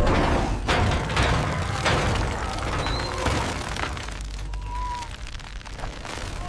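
Cartoon sound effects of a rusted metal bolt cracking apart and a stack of pipes and building materials giving way: a deep rumble with a series of sharp cracks and thuds, heaviest in the first couple of seconds, easing off near the end with a brief metallic squeal.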